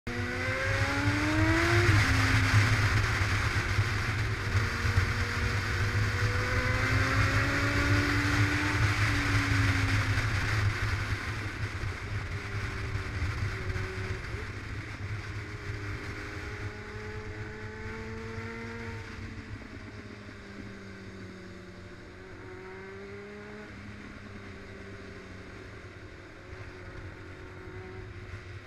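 Motorcycle engine heard from on board, with heavy wind noise on the microphone. The engine note rises and falls with throttle and gear changes, climbing and then dropping sharply about two seconds in. Wind and engine are loudest in the first ten seconds and grow quieter after that.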